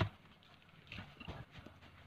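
Handling knocks and taps from an opened Bluetooth speaker's plastic housing and its wiring being moved by hand: a sharp knock at the start, then a few lighter taps about a second in.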